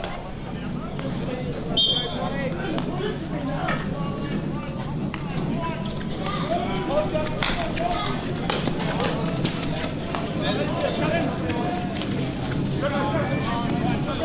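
Players' voices calling out across a field hockey pitch, with a short high whistle blast about two seconds in and a sharp crack of a stick striking the ball about seven seconds in.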